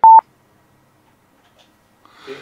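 A single short electronic beep right at the start, one steady high tone lasting a fraction of a second.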